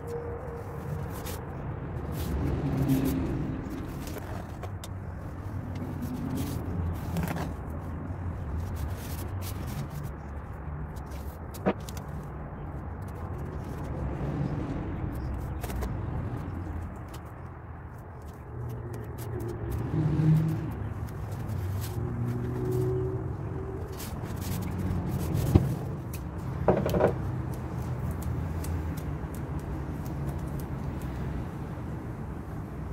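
A steady low rumble like a motor vehicle running, with a few sharp clicks and soft handling noises from blue painter's tape being pulled and pressed onto a chair.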